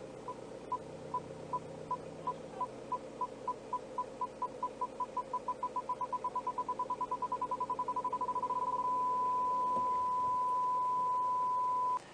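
BMW 320d reverse parking sensor beeping: single beeps at one pitch, a little over two a second at first, quickening steadily as the car backs toward an obstacle and merging into a continuous tone about nine seconds in, the sign that the obstacle is very close. The diesel engine idles underneath.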